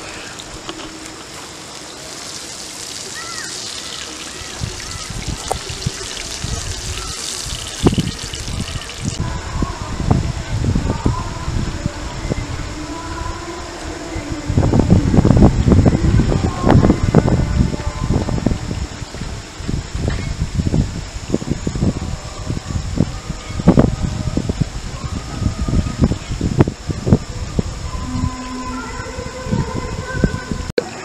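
Fish sizzling in hot oil in a frying pan: a steady hiss that stops suddenly about nine seconds in. After that comes a long run of irregular knocks and handling thumps, busiest a little after the middle.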